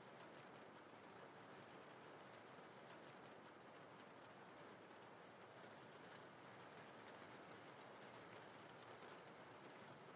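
Faint, steady rain sound, an even hiss just above silence.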